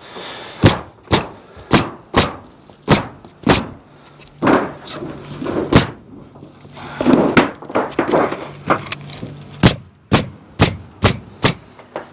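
Pneumatic roofing nailer firing nail after nail through the edge of galvanized steel valley metal into the roof deck. More than a dozen sharp shots come at uneven spacing, often about half a second apart.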